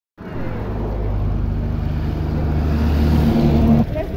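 Small motorcycle engine running close by at a steady pitch, growing a little louder, then cutting off suddenly near the end.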